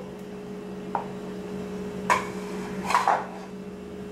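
A few light knocks and scrapes of a small bowl and a silicone spatula against a plastic mixing bowl, about a second, two seconds and three seconds in, over a steady low hum.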